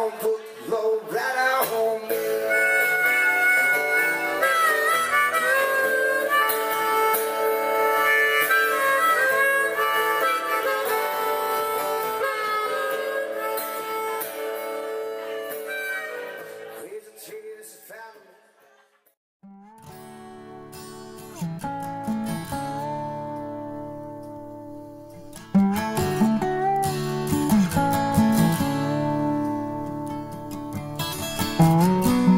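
Harmonica solo, its notes held and bending, played cupped into a microphone over acoustic guitar accompaniment. It fades out about two-thirds through. After a brief drop, acoustic guitar music starts quietly and becomes louder near the end.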